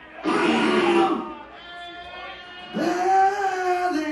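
A male rock singer's voice through a concert PA: a short loud wordless vocal burst that bends in pitch early on, then, from about three seconds in, a long held sung note.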